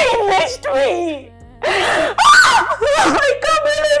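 A woman wailing and sobbing in distress: several drawn-out cries that bend in pitch, broken by a ragged gasping sob about halfway through.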